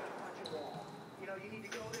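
Squash ball being hit and bouncing off the court walls: a sharp hit about half a second in with a brief high ringing note after it, and another hit near the end.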